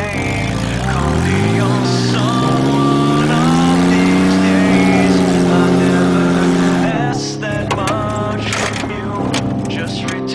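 Off-road race truck's engine revving up over about two seconds and held at high revs while its wheel spins in loose dirt, the truck stuck. The revving drops off about seven seconds in, followed by a run of short sharp clatters.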